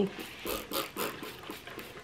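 Faint scattered rustling and scuffing as a cloth rag is handled, a few soft short noises with no steady sound.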